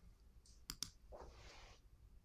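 Two quick computer mouse clicks close together, under a second in, followed by a faint soft rustle; otherwise near silence.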